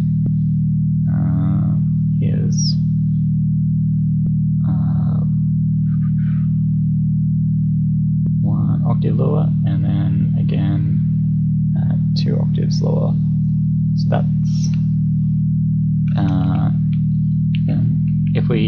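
Dirtywave M8 tracker's FM synth holding a steady, unbroken low tone. Operator C, a sine modulator, is set at ratio 0.25, two octaves below the note, where its harmonics sit stable.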